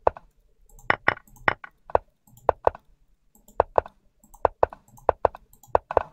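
Rapid sharp clicks of moves being played in a fast online chess game, mostly coming in pairs a fraction of a second apart, about a dozen in all.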